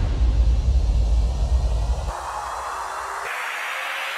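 Electronic build-up effects for a drum and bass drop: a deep booming impact with a noise sweep that decays, layered with white-noise risers. The low boom falls away about two seconds in, leaving the hissing riser, which grows brighter near the end.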